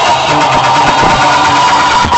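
Loud music played through a custom sound-system trailer built with walls of loudspeakers, steady and dense with a repeating bass line.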